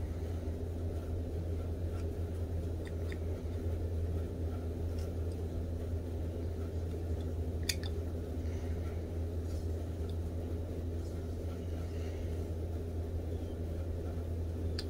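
Whittling knife making small cuts in a wooden frog carving: a few faint ticks as the blade slices the wood, one sharper click about eight seconds in, over a steady low hum.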